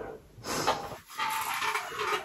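Breathing in and out through a full-face snorkel mask: airy breaths sounding in the mask and its breathing tube, the last one longer with a faint wavering tone.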